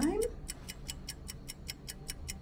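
Fast, even ticking, about five light ticks a second, keeping a steady beat throughout, with the last rising word of a woman's question at the very start.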